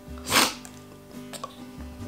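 A single sneeze into the arm, about half a second in, from a person who is ill. Soft background guitar music runs underneath.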